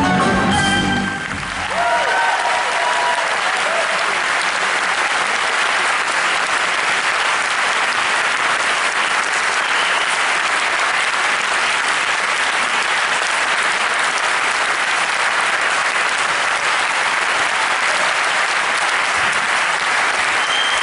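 A live band's last notes end about a second in, then an audience applauds steadily.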